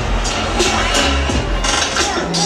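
Hype music with a heavy bass beat booming over a stadium public-address system, echoing in the open bowl.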